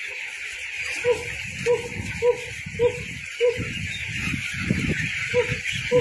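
A flock of 20-day-old broiler chicks cheeping, with one short call repeating regularly, a little under twice a second.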